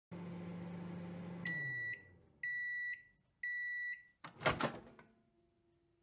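Microwave oven running with a steady hum that winds down as the timer reaches zero, then three half-second beeps signalling that cooking is done. A sharp double clunk follows about four and a half seconds in.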